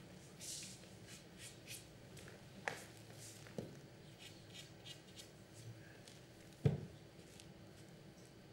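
Carom billiard shot being played: a few faint clicks of cue and balls, with one sharper knock near the end, over soft rustling in the hall.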